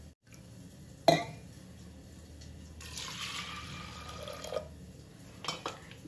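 Water being poured into a pressure cooker over soaked urad dal, a hissing pour lasting about two seconds midway. Before it, about a second in, there is one sharp knock, the loudest sound, like a vessel striking the cooker.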